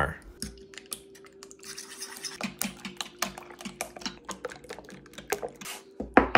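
A fork beating raw eggs in a well of flour, its tines ticking against the board beneath in many quick, irregular clicks.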